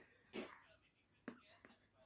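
Near silence, broken by one short breathy puff about half a second in and a sharp faint click just after a second, with a softer click shortly after.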